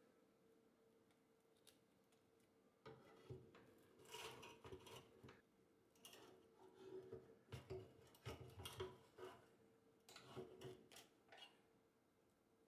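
Faint scraping and rubbing of a plastic spatula against a nonstick air fryer basket and toasted bread as a sandwich is turned over. It comes in several short, uneven bursts after a quiet first few seconds.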